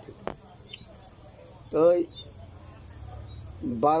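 Crickets chirping in a steady, high, rapidly pulsing trill that carries on without a break; a man's voice says two short words, about halfway through and near the end.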